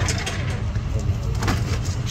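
Steady low rumble of an idling vehicle engine, with a sharp click near the start and another about a second and a half in.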